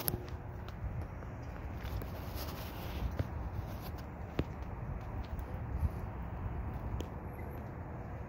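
Footsteps and handheld phone handling noise as a person walks outdoors, over a steady low rumble, with a few faint clicks scattered through.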